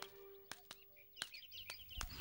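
Faint bird chirping, a few short high chirps that cluster near the end. Under it the last held note of background music fades away in the first second or so, with a few light taps.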